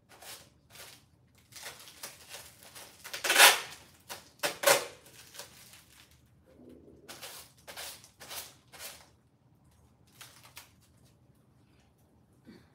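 Clothes rustling as garments are handled and shaken out, in a string of short swishes, loudest about three and a half seconds in and again just before five seconds.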